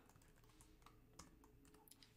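Faint computer-keyboard typing: a handful of soft, scattered key clicks over near silence.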